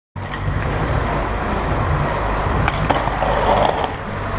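Skateboard wheels rolling on rough pavement with a steady rumble, with a few sharp clicks from the board. Near the end comes a scraping grind as the board slides along a ledge.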